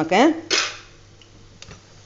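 Stainless steel kitchen utensils clattering: one brief metallic clatter about half a second in, then a single light click a little over a second later.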